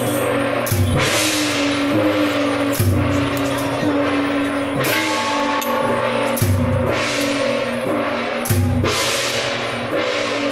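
Temple procession percussion: a big drum beat with a cymbal crash about every two seconds, over steady held notes.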